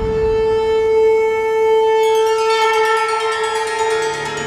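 A single long, steady note from a wind instrument in the background score, held without a change in pitch and growing brighter about halfway through, over a low rumble.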